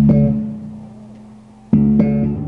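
Ibanez SR1205 Premium five-string electric bass: a note plucked at the start rings and fades away over about a second and a half, then another note is struck near the end.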